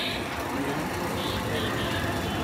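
Steady roadside street noise: traffic hum with faint voices in the background.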